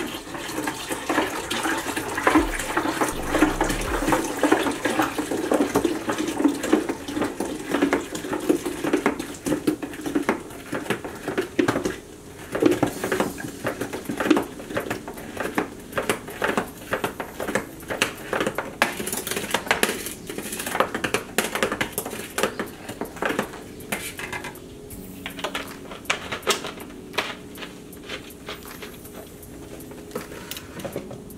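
A 2-liter bottle of Sprite being poured into a large beverage dispenser of lemonade: for about the first twelve seconds the liquid glugs and splashes steadily. It is followed by a run of quick clinks and knocks, typical of a long spoon stirring against the dispenser, which die down a few seconds before the end.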